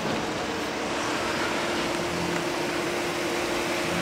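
Steady machine hum with one constant mid-pitched tone over an even background hiss.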